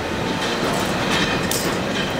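Diesel-hauled passenger train running on the rails, heard from an open window: steady wheel and running noise, with a brief high-pitched burst about one and a half seconds in.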